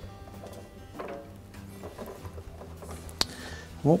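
Soft background music with steady held notes, with a few light clicks from hands working the wire band clamp on the washer's rubber door boot; the sharpest click comes a little past three seconds in.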